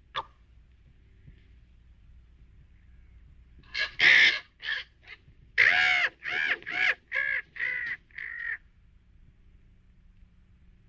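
A crow cawing over and over: a quick run of about a dozen caws that starts about four seconds in and stops some four and a half seconds later.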